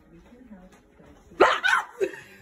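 Faint low murmuring, then a sudden loud yelp about one and a half seconds in, as someone is startled by a jump scare.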